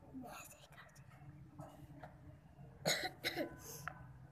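Faint voices of people nearby, with two short, sudden, louder bursts near the end that sound like coughs.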